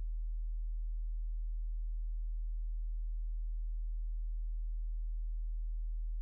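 Steady, low electrical hum: a single unchanging low tone and nothing else.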